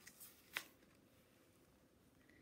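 Pages of a hardcover picture book being turned by hand: a faint paper rustle and one brief crisp snap of paper about half a second in, then near silence.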